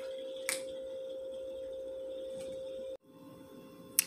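A steady, even tone with no change in pitch, broken by a single click about half a second in; the tone cuts off suddenly about three seconds in, leaving a much quieter, fainter hum.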